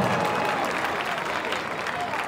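Stadium crowd applauding and cheering a base hit.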